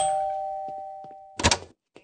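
Two-tone doorbell chime, a higher note then a lower one, ringing on and fading out over about a second and a half, followed near the end by a short clunk.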